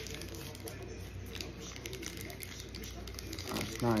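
Faint rustling and small clicks of a disposable vape's packaging being handled and opened, with one sharper click right at the start, over a steady low hum.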